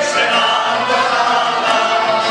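Small choir of singers with a folk band of accordion, clarinet, keyboard and guitars, singing and playing a song at a steady level.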